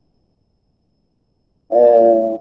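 Near silence, then a man's voice holding one steady, drawn-out vowel near the end, a hesitation sound before speaking.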